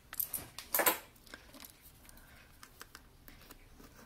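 Three or four short metal scrapes in the first second as a stainless steel screw-down watch case back is handled and turned by hand, then faint handling noise.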